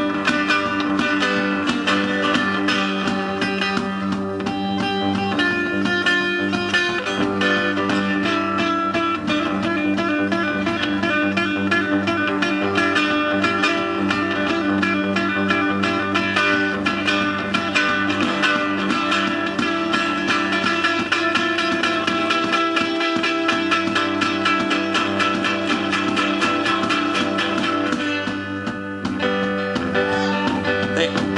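Acoustic guitar played hard and fast in a live performance, a driving rhythm of dense strokes that runs on steadily and dips briefly near the end.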